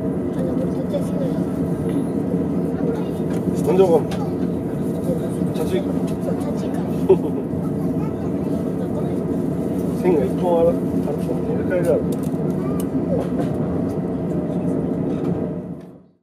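Steady interior hum of a JR East E231-series commuter train heard from inside the carriage as it pulls slowly along a station platform, with a few short bursts of low voices. The sound fades out near the end.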